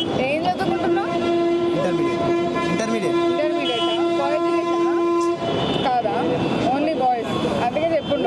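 A horn sounds one long, steady blast on a single pitch, starting just under a second in and cutting off after about four and a half seconds, with people talking over it.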